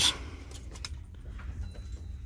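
Faint light clicks and knocks of a glass snow globe being handled and shaken, over a steady low hum.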